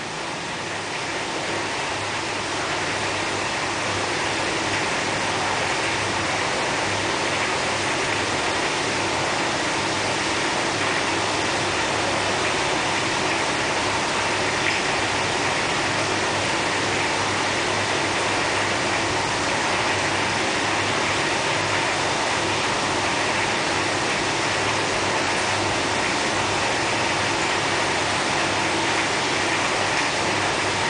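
A steady, even rushing noise that swells in over the first few seconds and then holds unchanged, with a faint low hum beneath it.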